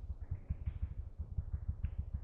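Computer keyboard keys tapped in quick succession, heard as a run of soft, dull thumps several times a second.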